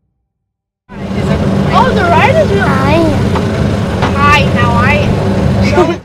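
After a second of silence, a vehicle engine starts up and runs steadily, with high, swooping voices calling over it.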